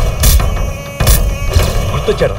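Film sound effects over the background score: a heavy low rumble with two loud noisy surges about a second apart.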